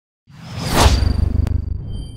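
A whoosh sound effect for an animated logo. It swells to a peak just under a second in over a low rumble that fades away, with a sharp click about a second and a half in.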